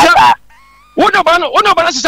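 Speech: a voice talking in short, emphatic phrases, breaking off for about half a second soon after the start.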